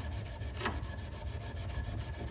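Fine wire wool with Brasso rubbing quickly back and forth over a tarnished brass piano pedal, an even scratchy scrubbing that is taking the oxidation off.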